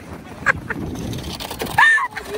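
Short, high-pitched vocal sounds from people in the snow: two brief yelps about half a second in, then a louder call that rises and holds near the end.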